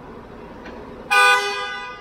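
A car horn sounds once about a second in: a loud, sudden toot with two pitches together that fades away over the next second, over the steady background noise of a vehicle workshop.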